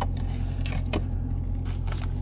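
Low, steady hum of the Challenger R/T Scat Pack's 6.4-litre HEMI V8 idling, heard from inside the cabin, with a few soft clicks.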